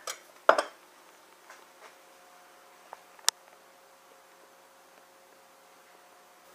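Pie dish being handled on a hard kitchen surface: a clunk about half a second in, a few light taps, then one sharp click about three seconds in. A faint steady hum sits underneath in the second half.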